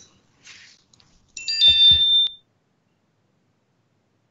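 Microsoft Teams notification chime for an incoming chat message: a short electronic chime of a few bright, steady tones about a second and a half in, one note ringing on slightly longer than the rest.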